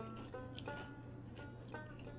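Banjo music: single plucked notes picked out a few times a second, each fading quickly, over a steady low hum.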